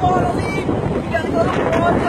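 Steady rush of wind and road noise on a phone's microphone in a moving car, with faint voices in it.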